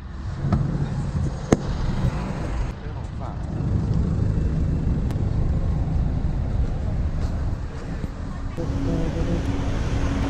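Outdoor background noise in a busy car park: a steady low rumble with faint voices, and one sharp click about one and a half seconds in.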